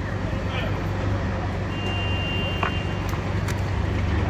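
Steady low rumble of outdoor background noise with faint background voices, and a couple of light clicks about three seconds in.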